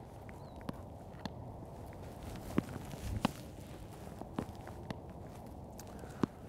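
Spec Tennis rally: about half a dozen sharp knocks, a second or so apart, as the paddles strike the ball and it bounces on the hard court. The loudest knocks come near the middle.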